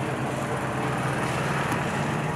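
A small engine running steadily at an even pitch, a constant low hum with a dense rushing noise over it.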